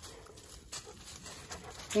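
A dog panting faintly, with a couple of small clicks.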